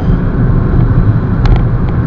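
Road and engine noise inside the cabin of a moving VW Jetta: a steady low rumble with a hiss over it, and a faint click about one and a half seconds in.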